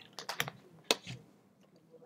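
A few irregular, sharp key clicks close to the microphone, as from typing on a computer keyboard; the loudest comes about a second in.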